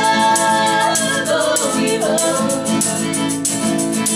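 Honky-tonk country song sung by three women in close harmony, holding long notes, backed by fiddle, strummed acoustic guitar and a tambourine jingling on the beat.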